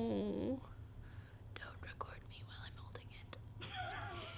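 A woman's voice: a hummed, pursed-lip sound falling in pitch in the first half-second, then soft whispering and mouth clicks, and a short voiced sound near the end, over a steady low hum.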